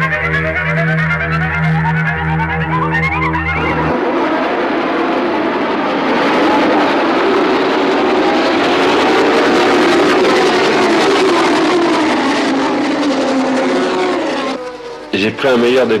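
Music with a steady bass ends about four seconds in. It gives way to the dense sound of a full field of 1976 Formula One cars accelerating together off the starting grid, many engines overlapping, their pitches rising and falling. The sound is loudest in the middle and fades near the end.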